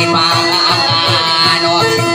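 Amplified guitar picking a melody over a held note as accompaniment to Maranao dayunday singing, with a voice singing along.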